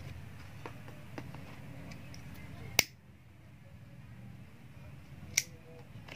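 Two sharp clicks about two and a half seconds apart, from a handheld lighter being struck, among faint small ticks of hands handling satin ribbon.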